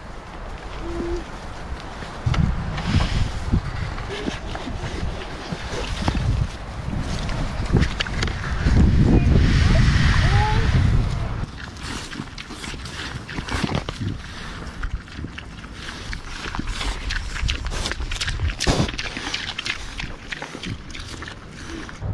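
Young pigs eating ground corn-and-soybean hog feed from a metal pan: many small clicks and chewing, snuffling noises, loudest in a stretch around the middle, with a few brief squeals or calls.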